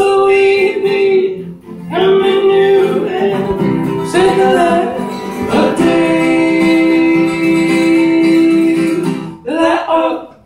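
Live folk duo performing: a woman and a man singing together over a strummed acoustic guitar. There is a brief pause between phrases about a second and a half in, and one long held note from about six to nine seconds.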